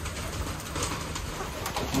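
Steady hiss of rain, with quiet calls from hens pecking at the ground.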